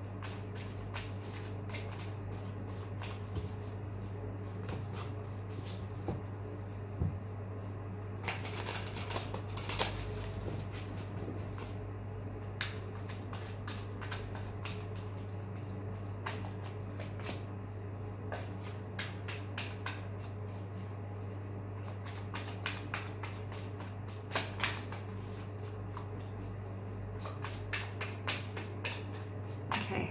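A deck of tarot cards being hand-shuffled, the cards clicking and slapping against each other in irregular runs, with busier stretches about eight to eleven seconds in and near the end. A steady low hum sits underneath.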